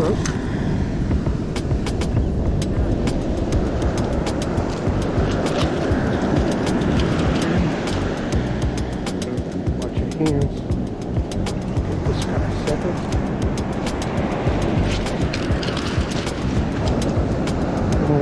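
Wind rumbling on the microphone over breaking surf, with many sharp clicks and taps scattered through it.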